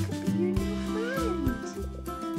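A kitten meows once, a long call that rises and then falls in pitch, over background music.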